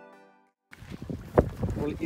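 Background music fading out into a brief silence, then live outdoor sound on a bamboo raft on a lake: wind on the microphone and one sharp knock about halfway through.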